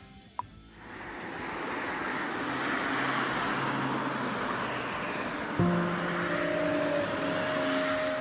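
Steady rush of road traffic that swells up over the first couple of seconds, just after a short click. About five and a half seconds in, music enters suddenly with held notes over the traffic.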